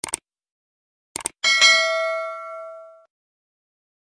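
Subscribe-button animation sound effect. A quick double mouse-click, then another cluster of clicks about a second later, then a bright notification-bell ding that rings out and fades over about a second and a half.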